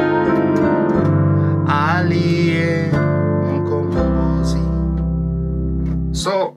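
Piano keyboard playing sustained hymn chords, with a low bass note held from about four seconds in. A voice sings a short phrase over the chords around the middle.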